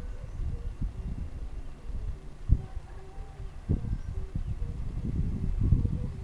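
Wind buffeting the microphone in irregular low gusts, with two sharp thumps a little over a second apart in the middle and a heavier gust near the end.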